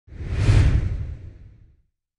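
Logo intro sound effect: a single whoosh with a deep low rumble that swells quickly, peaks about half a second in and fades out by near the end.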